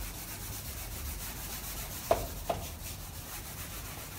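A board eraser rubbing across a whiteboard in wiping strokes, wiping writing off. Two short knocks come about halfway through, half a second apart.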